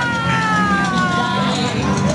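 A person's voice holding one long, high wailing call that slides slowly down in pitch for about a second and a half, over crowd chatter and background music.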